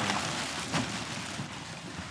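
Clear plastic wrapping rustling and crinkling as a backpack wrapped in it is pulled out of a cardboard box.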